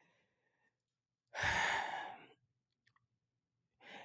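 A man's sigh into a close microphone: one breathy exhale of about a second, starting a little over a second in and trailing off.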